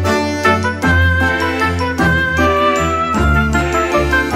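Background music: a bright, tinkling melody over a steady bass line.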